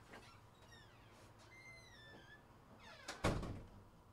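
A few short squeaks that fall in pitch, then a single loud thump a little after three seconds in.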